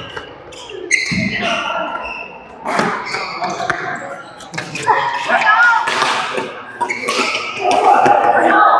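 Badminton rally: rackets striking the shuttlecock in repeated sharp cracks, roughly every second, echoing in a large sports hall, with voices in the background.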